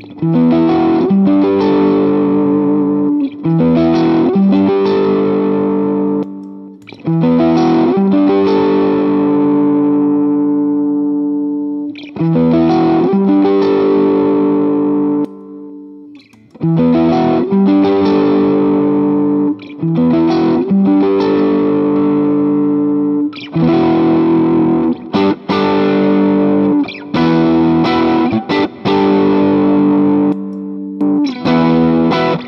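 Electric guitar (a Stratocaster-style guitar) played through a Vertex Ultra Phonix overdrive pedal into a 1974 Fender Deluxe Reverb amp: overdriven chords strummed and left to ring out, with short breaks between phrases and quicker choppy strums near the end.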